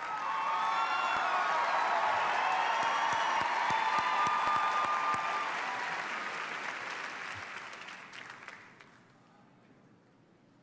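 TV studio audience applauding and cheering, dying away about nine seconds in.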